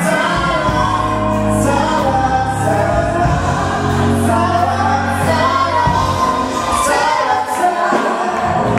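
A man and a woman singing a duet into handheld microphones over amplified backing music with sustained bass notes.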